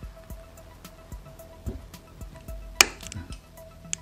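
Knife blade scoring the legs of a surface-mount SO-16 IC, with small faint scrapes and a sharp click nearly three seconds in as a leg gives under harder pressure on the blade, and a second click just before the end.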